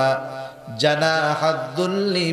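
A man chanting Qur'anic verse in Arabic in a slow, drawn-out melodic recitation, with a short pause for breath about half a second in.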